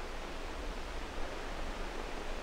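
Faint steady hiss with a low hum underneath: the background noise of an old 16 mm film soundtrack, with no other sound.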